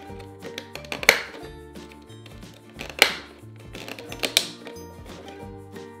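Light background music with steady held notes, and three sharp clicks of hard plastic, about one, three and four and a half seconds in, as a plastic toy cup is taken out of a plastic playset compartment.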